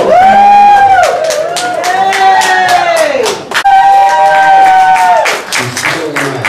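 Live singing in long held notes, a second voice joining in harmony on the last one, with scattered clapping.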